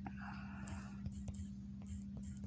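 Faint light taps of typing on a phone's touchscreen keyboard, a few scattered clicks, over a steady low electrical hum, with a short whispered breath near the start.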